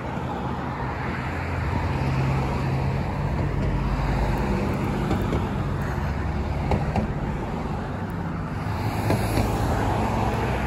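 Road traffic on a multi-lane street: cars driving past with a steady hum of engines and tyres that grows louder about two seconds in.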